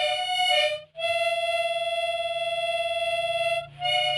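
Background music: a reedy wind-instrument melody, short notes and then one long held note from about a second in until just before the end.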